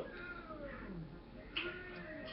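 Short voice-like calls that slide down in pitch: one starts sharply at the beginning, another about one and a half seconds in.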